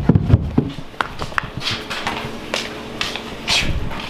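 Footsteps going down carpeted stairs: a quick run of low thuds at the start, then lighter knocks and brief rustles of clothing and handling.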